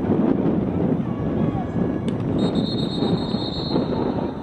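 Outdoor lacrosse field ambience: a steady low rumble of wind on the microphone, with distant players' voices. There is a single sharp click about two seconds in, and a faint high tone near the end.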